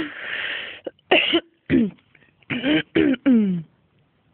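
A person's short non-word vocal outbursts: a breathy, cough-like exhale at the start, then about five brief voiced bursts with falling pitch, like coughing or drunken laughter.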